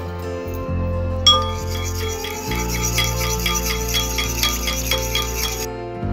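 A spoon stirring custard powder into milk in a bowl: a quick, even run of scraping strokes, about four a second. It starts with a clink about a second in and stops shortly before the end, over background music.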